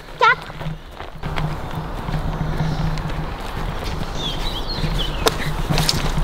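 Quick footsteps on grass, with a steady rushing noise from the moving, handheld microphone.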